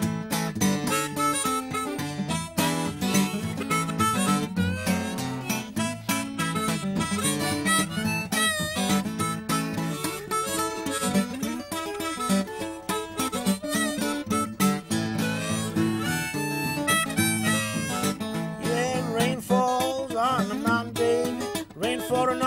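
Harmonica in a neck rack and fingerpicked acoustic guitar playing a country-blues instrumental break, the harmonica bending and wavering its notes about halfway through and again near the end.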